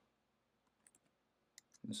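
A few faint computer keyboard keystrokes, a couple about a second in and another just before speech resumes, over near silence.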